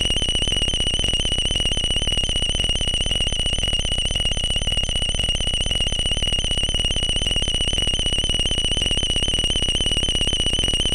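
Live electronic music: a steady, high, slightly wavering tone with fainter overtones above it, over a dense, rapid buzz.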